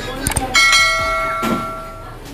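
Subscribe-button animation sound effect: a couple of quick mouse clicks, then a bright notification bell chime about half a second in that rings and fades away over about a second and a half.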